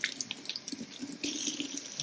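Kitchen faucet running onto a paintbrush held upside down with its bristles cupped in a palm, the water splashing into a stainless steel sink. About a second in the splashing turns brighter and hissier.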